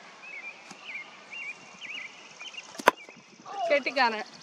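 A single sharp wooden crack of a cricket bat striking the ball, about three quarters of the way through, followed by a short falling voice call near the end. Small bird chirps sound in the first half.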